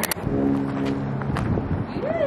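A vehicle horn sounding one steady, low-pitched note for about a second.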